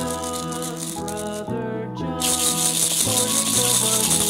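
A small cardboard toy package shaken by hand, rattling lightly at first and then loudly from about two seconds in, over background music with a gentle melody.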